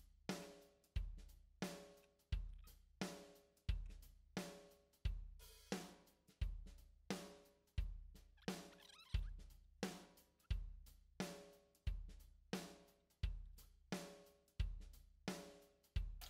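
Quiet background music: a sparse drum-kit beat, with a bass drum and a snare alternating at an even, moderate tempo.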